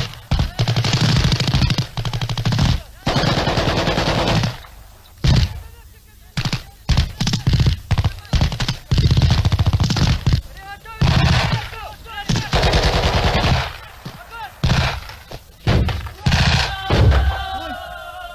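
Automatic rifle fire during shooting training: bursts of rapid shots lasting a second or two each, with single shots and short pauses between them.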